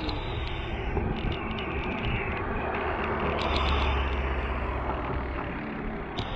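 Wind rushing over a bike-mounted action camera and tyres rolling on wet pavement at a slow riding pace. The low rumble swells for a couple of seconds about halfway through, with scattered light clicks and rattles from the bike.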